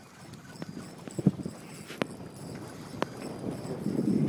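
A few sharp, separate clicks and knocks, roughly a second apart, over faint wind and water noise.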